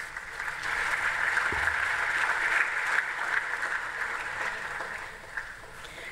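Audience applauding, building up over the first second and fading away near the end.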